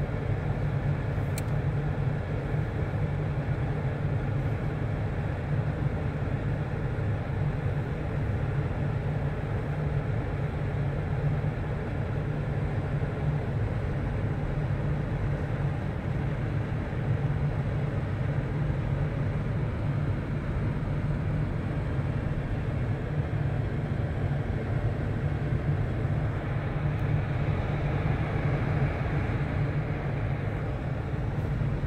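Steady low rumble of a car driving, heard from inside the cabin.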